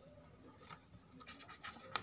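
Paper pages of a paperback workbook rustling and scraping under the fingers as a page is turned, a few faint scratches growing louder toward the end.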